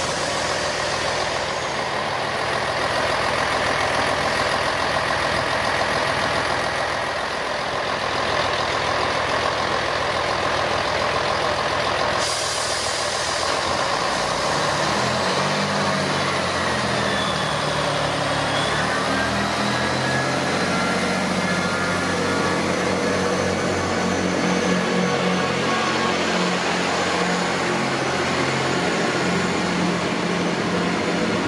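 Underfloor diesel engines of a Class 158 diesel multiple unit running steadily at the platform. From about halfway through they work harder as the train pulls away, their pitch rising and changing in steps.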